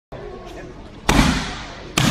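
Roundhouse kicks smacking into a handheld kick shield: one loud strike about a second in that echoes off the gym walls as it dies away, and another right at the end.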